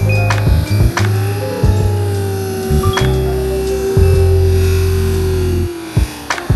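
Background music with a deep held bass line, a long sustained note that slides down slightly near the end, and drum hits.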